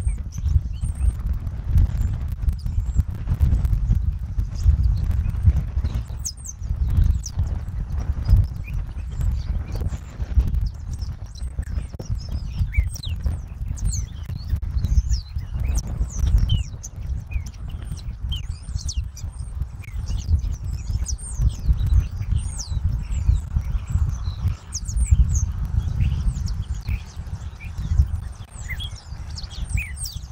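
Wind buffeting an outdoor microphone in an irregular low rumble, with small birds chirping many short, high, falling notes throughout.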